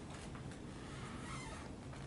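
Quiet indoor room tone: a faint low rumble with a few soft, faint ticks, such as small handling or floor noises.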